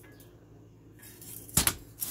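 Rusty steel clutch plates from an Allis-Chalmers HD5G steering clutch knocking together as a hand shifts them in their stack: a sharp, quick double clink with a short metallic ring about one and a half seconds in.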